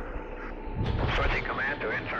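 Indistinct voices in a large room, with a low rumble under them from about a second in.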